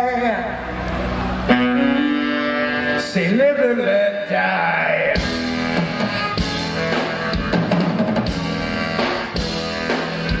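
Live rock band playing, with drum kit, saxophones, keyboard and electric guitar. Held notes with a wavering, gliding melody line fill the first half; about halfway through the drums strike in and the full band plays on.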